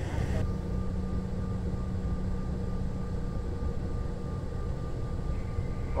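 Jet airliner's engines and air system heard inside the cabin: a steady low rumble with a constant hum, the aircraft on the ground.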